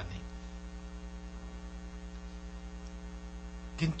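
Steady electrical mains hum in the microphone's sound system, with a fast, even pulsing in it, heard during a pause in the talk.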